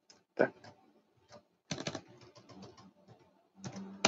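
Computer keyboard typing: scattered keystrokes, with one louder key about half a second in and a quick run of several near the middle.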